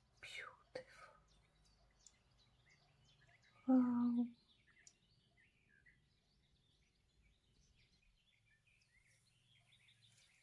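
Faint bird chirps scattered over a low steady hum, with one short voiced sound, like a hum, about four seconds in.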